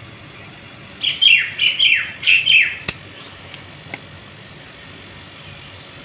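A bird calling: a quick run of about six falling notes lasting under two seconds, followed by a single sharp click.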